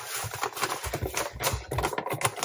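Clear plastic bag crinkling and rustling as it is handled, a dense irregular run of crackles that starts abruptly.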